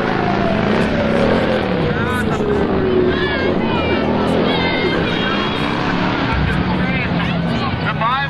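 A marching street crowd: many voices shouting and calling over a loud, steady din. A long tone slowly falls in pitch over the first few seconds.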